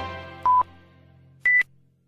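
News-channel intro sting: a chord fading away, then two short electronic beeps about a second apart, the second higher in pitch.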